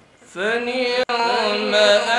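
A man's voice reciting the Quran in a melodic, drawn-out chant (tilawat) into a stage microphone, starting about a third of a second in and held on long, gliding notes. The sound cuts out for an instant about halfway through.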